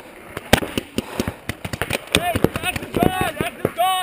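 Paintball markers firing: an irregular scatter of sharp pops, several a second at times. Players shouting across the field from about halfway through.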